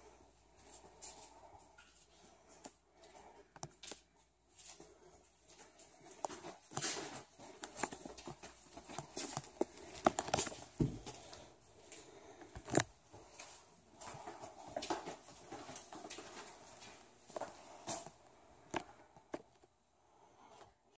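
Faint, scattered footsteps and handling knocks from someone walking through rooms while holding a phone, with a few sharper clicks about halfway through.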